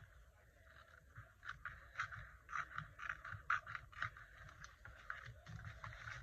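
Paper rustling and scraping as the pages of a spiral-bound sketchbook are handled and leafed through: faint, irregular crackles and soft clicks, busiest in the middle stretch.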